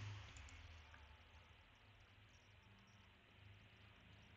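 Near silence: a faint low hum with a few faint computer-mouse clicks in the first second or so.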